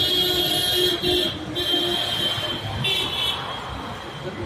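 Road traffic with a high-pitched vehicle horn honking three times: a long blast, a shorter one, and a brief one a little before the end.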